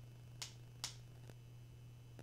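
Two short, sharp clicks about half a second apart, then a much fainter one, over a faint steady low hum.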